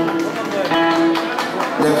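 Live folk dance music: a plucked-string melody with a voice holding long, wavering notes.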